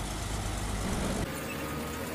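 Tank engine running with a steady low rumble, its deepest part falling away a little past halfway.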